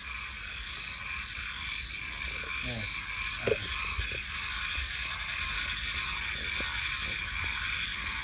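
Steady night chorus of frogs calling, a continuous high-pitched trilling drone, with a brief faint voice fragment a few seconds in.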